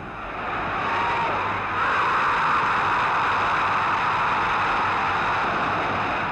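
A large stadium crowd roaring after a goal. The cheer swells over the first second or two, then holds loud and steady, easing slightly near the end.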